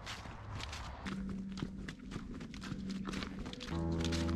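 Footsteps crunching through fallen leaves on a wet forest track at a steady walking pace. Soft background music comes in, growing fuller near the end.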